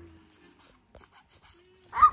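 A puppy giving short, soft whimpers, with faint ticks around it.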